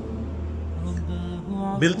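Soft background music: a steady low drone with a few held tones, and no speech over it until a man's voice comes back near the end.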